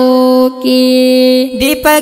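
Boys singing a Pashto nazam, an Islamic devotional poem, with no instruments seen: a young boy's voice holds two long, steady notes, and near the end an older youth's voice takes over with quicker notes.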